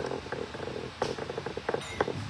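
Harmonium being handled and readied to play: a low fluttering sound with several sharp clicks, the loudest about a second in.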